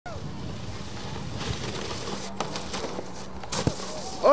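Snowboard sliding over slushy summer snow: a steady scraping hiss, with a few sharp knocks in the second half.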